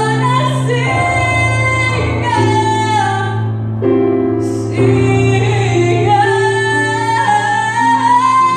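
A woman singing a musical-theatre ballad into a handheld microphone, holding long notes over sustained accompaniment chords.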